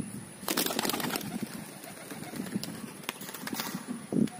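Pigeons: a quick flurry of wing flaps about half a second in, lasting under a second, with a few more flaps near the end, over low cooing.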